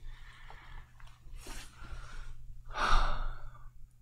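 A man breathing out audibly close to the microphone, twice, the second breath louder, like a sigh, about three seconds in, over a faint steady low hum.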